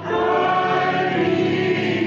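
Gospel choir singing a hymn with held chords; a new phrase swells in at the start after a brief dip.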